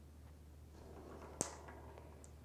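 A small metal ball rolls faintly down a short ramp, then gives one sharp click as it strikes the row of balls resting on the rail, about one and a half seconds in.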